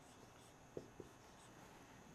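Faint sound of a dry-erase marker drawing boxes on a whiteboard, with two light taps about three-quarters of a second and one second in.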